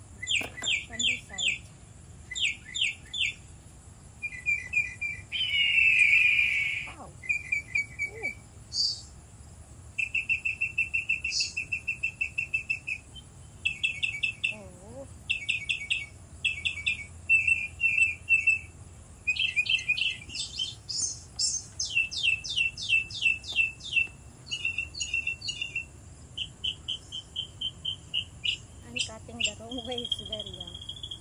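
Small songbirds chirping and singing, with short repeated phrases, fast trills and quick downward-sweeping notes following one another.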